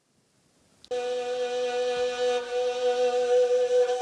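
Silence for about the first second, then a bowed string instrument held upright on the knee, of the Greek lyra kind, sounds one long steady held note, with a lower note beneath it that drops away near the end.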